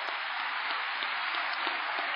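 An audience applauding steadily.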